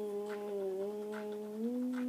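A child humming one long held "mmm" note as a sound effect for a planet's rolling motion. The pitch steps up slightly about one and a half seconds in.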